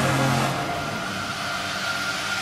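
Drum and bass music in a breakdown: a sustained noisy wash over a held low note with no beat, fading slightly, just before the drop.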